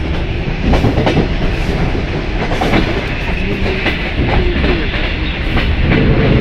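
An ER2R electric multiple-unit train running at speed, heard from inside at an open window: a steady rumble with scattered clicks of the wheels over the rails.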